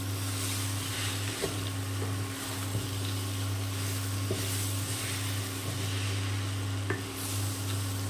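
Wooden spatula stirring a dry mix of chopped nuts, seeds, raisins and dates in a hot non-stick pan on an induction cooktop, a rustling scrape with each stroke and a few light clicks. A steady low hum runs underneath.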